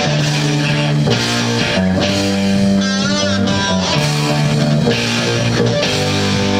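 Live rock band playing: electric guitars, bass guitar and drum kit, with sustained chords changing about once a second and a wavering high note about three seconds in.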